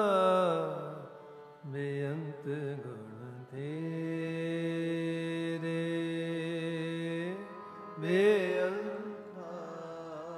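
Shabad kirtan: a male voice singing a Gurbani hymn in long, wavering notes, with one steady note held for about four seconds in the middle.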